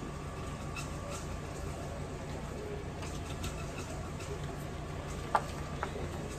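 Faint light clicks and soft handling sounds of sliced onion being laid by hand onto raw potato slices in a skillet, over a steady low hum, with two sharper clicks near the end.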